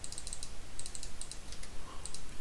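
Computer keyboard keys tapped in two quick runs, clearing a typed value from a dialog field.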